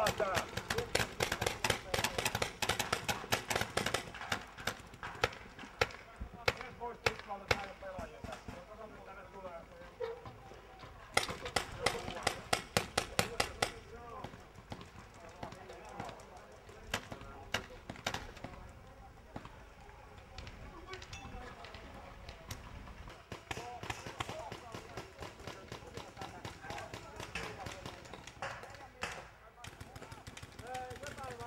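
People's voices calling out over a series of sharp clicks and knocks that come in quick clusters, loudest near the start and again about halfway through.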